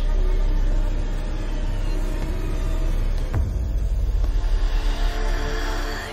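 Dark, suspenseful film-score sound design: a low rumbling drone with sustained tones over it, a sharp hit a little over three seconds in, then a pulsing deep rumble.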